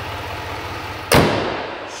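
A 6.6-litre L5P Duramax V8 diesel idling steadily with a regular low pulse. A little over a second in, the hood is slammed shut: one loud bang with a short ring after it.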